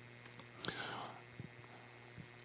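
A pause in speech: quiet room tone, with one short, faint breath into a handheld microphone about two-thirds of a second in.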